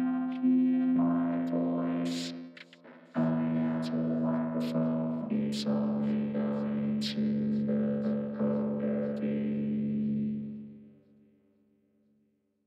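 Arturia Vocoder V software vocoder: held synth chords played from a keyboard and shaped by a spoken voice from the microphone, giving robotic vocoded speech with hissy consonants. The chord changes about a second in, again about three seconds in and about five seconds in, then the sound fades out about eleven seconds in.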